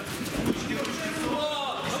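Men's voices calling out in a gym hall, with a dull low thud about half a second in.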